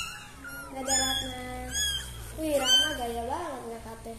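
Young kittens mewing: about four short, thin, high-pitched mews spaced through the few seconds.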